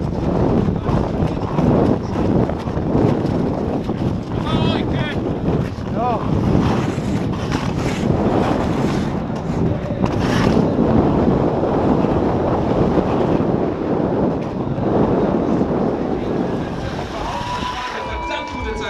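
Wind rushing over the microphone of a body-worn action camera as an ice-cross skater races down an ice track at speed, with the skate blades scraping and carving on the ice. A few brief calls come through about four to six seconds in, and there is a sharper hiss of ice spray around ten seconds in.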